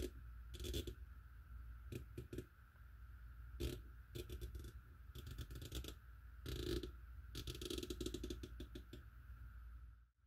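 Riflescope turret on a Primary Arms PLxC 1-8 being turned by hand, clicking through its detents: single clicks and short runs, with a longer quick run of clicks about three quarters of the way in. A faint steady hum runs underneath.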